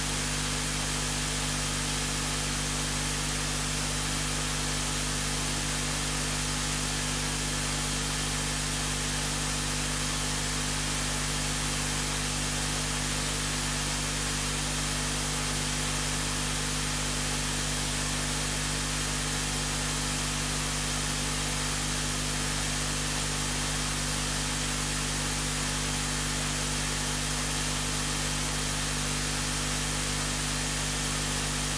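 Steady, unchanging hiss with a low hum underneath and no distinct events: background room and recording noise.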